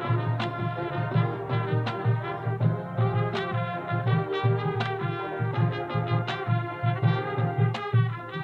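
High school marching band playing its field show: sustained brass chords over a steady beat of bass drum and percussion hits.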